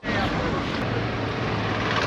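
Busy waterfront street ambience: a steady low engine hum from traffic, with faint voices of passers-by.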